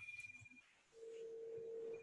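A faint, steady tone of one pitch that begins about a second in, after a brief, thinner high tone at the start.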